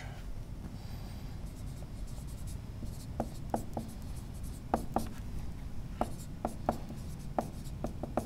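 Dry-erase marker writing on a whiteboard: faint scratching strokes, with a string of short ticks as the tip meets the board from about three seconds in.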